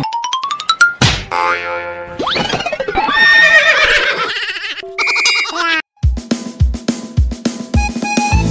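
Cartoon sound effects, among them a rising pitch glide and boings, followed about five seconds in by a short ding. Music with a steady drum beat starts about six seconds in.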